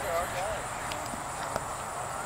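Indistinct voices of people talking, with a few sharp clicks around the middle, the loudest about a second and a half in.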